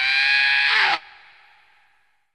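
The closing held note of a 1992 hardcore techno track, with no beat under it, gliding slightly up in pitch. It cuts off abruptly about a second in, and its echo tail fades out.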